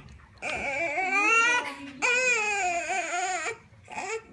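A one-week-old baby crying during its bath: two long, wavering wails, the first starting about half a second in and the second right after it, breaking off shortly before the end.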